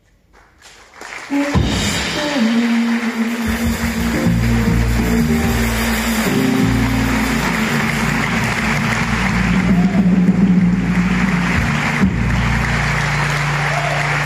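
After about a second of near silence, audience applause breaks out and carries on steadily, while the jazz band holds low sustained notes from bass and guitar underneath that shift pitch a few times.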